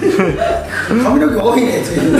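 A man talking with chuckling laughter.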